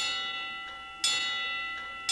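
Background music of bell-like chime notes: two notes struck about a second apart, each ringing and fading.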